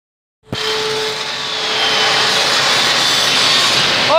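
Angle grinder grinding a steel beam, starting about half a second in: a loud, steady grinding noise with a high whine from the disc.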